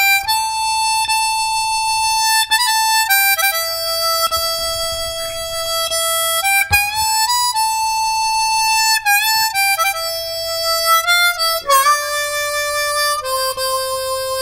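Hohner harmonica played solo: a slow melody of long held notes, with a note bent downward about twelve seconds in.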